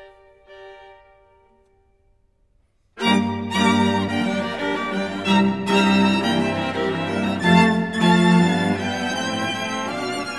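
String quartet (two violins, viola, cello) playing: a couple of soft held notes die away into a brief pause, then about three seconds in the full quartet comes in loudly and keeps playing.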